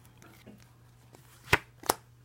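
A tarot card deck handled and shuffled quietly, then two sharp card snaps near the end, under half a second apart, as a card is drawn and laid down.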